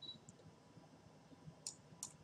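Near silence, broken by a single sharp click of a computer mouse about three-quarters of the way through, selecting a menu button, after a brief high beep at the very start.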